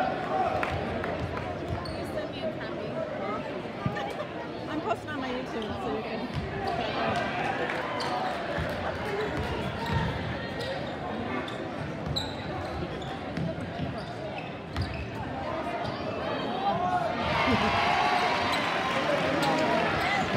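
Basketball bouncing on a hardwood gym floor over the chatter of a large crowd in a gymnasium; the crowd grows louder near the end.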